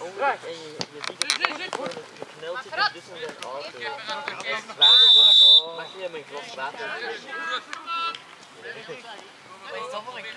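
One short, loud blast of a referee's whistle, a bit under a second long, about five seconds in. Voices talk and call out throughout.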